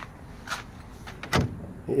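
Two short knocks about a second apart, the second sharper and louder, as a bent metal conduit hoop is shifted against the wooden frame to bring it back down to height.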